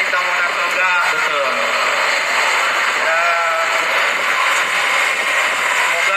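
Indistinct amplified speech from a man on a microphone, through a PA system in a hall, with a steady crowd hubbub underneath, heard in low-quality live-stream audio.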